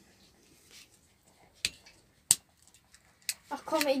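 A few sharp, separate clicks from fingers tapping and handling a smartphone, about 1.5, 2.3 and 3.3 seconds in, with little else between them.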